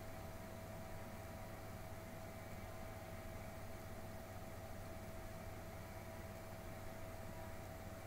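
Low, steady background hum and hiss, with a faint steady high tone running through it.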